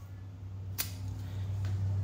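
Butane being refilled into a cigar lighter from a can pressed onto its fuel valve: a low steady hum, with a sharp click a little under a second in and a fainter click later.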